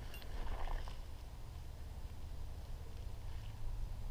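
Low, fluctuating rumble of wind buffeting the microphone, with a few faint ticks right at the start.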